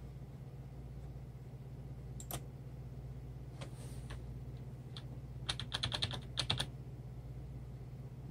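Computer keyboard keys being pressed: a single tap about two seconds in, then a quick run of about ten key presses a little past the middle, over a steady low hum.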